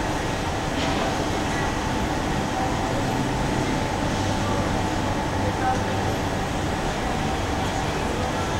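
Steady city street ambience: traffic noise mixed with the indistinct chatter of people nearby.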